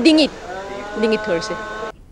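A woman's speech in short fragments over a steady humming tone. Both cut off abruptly near the end.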